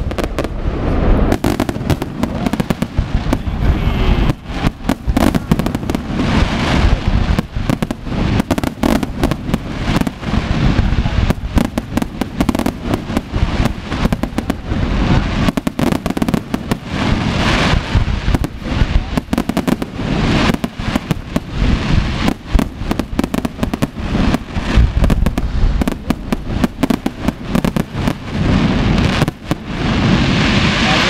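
Aerial firework shells bursting in a dense, continuous barrage, several bangs a second.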